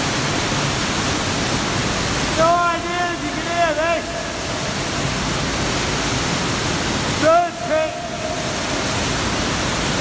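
Steady rush of falling water in a cave, with a person's voice calling out twice over it: once about two and a half seconds in, lasting a second or so, and again briefly near eight seconds.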